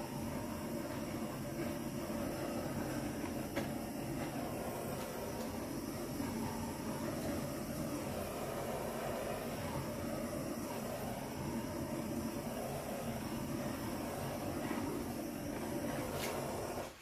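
Handheld torch flame running with a steady roar as it is passed over wet acrylic paint to raise small cells.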